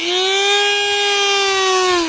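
Dremel rotary tool with a cutoff wheel, spinning freely with no load: a steady high whine held at one pitch, starting to wind down at the very end.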